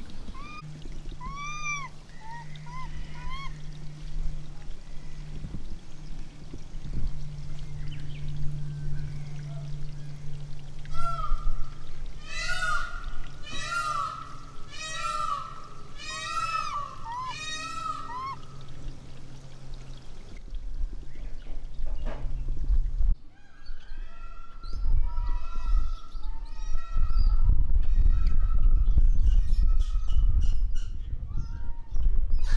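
Japanese macaques giving coo calls: short tonal calls that rise and fall in pitch. A few come early, a dense run of overlapping calls follows about halfway through, and more come near the end.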